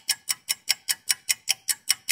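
Rapid, evenly spaced ticking, about five ticks a second, from a clock-style ticking sound effect.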